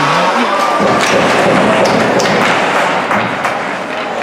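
Ice hockey play at the net: skates scraping the ice and sticks and puck clattering in a goalmouth scramble, with several sharp knocks about one to two and a half seconds in.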